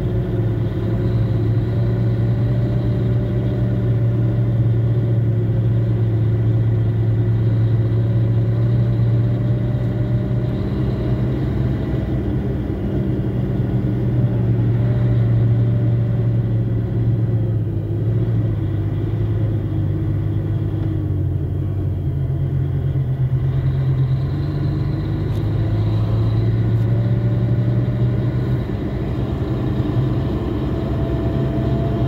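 A vehicle's engine running steadily, heard from inside its cab as it moves slowly. The low hum dips in pitch midway and drops further about two-thirds through, before rising again near the end.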